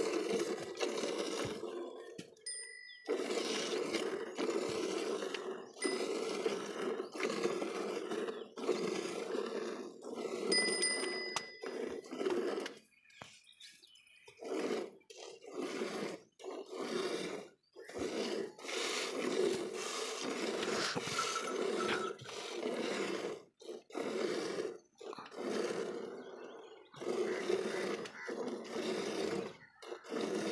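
Hand-milking a water buffalo: streams of milk squirting into a half-full steel bucket, heard as a frothy hiss in repeated spurts with short breaks between them. A few short bell-like rings come through a few seconds in and again about a third of the way through.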